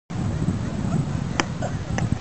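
A beach tennis paddle strikes the ball once on a serve, a single sharp pock about one and a half seconds in. Underneath runs a steady low rumble of wind on the microphone.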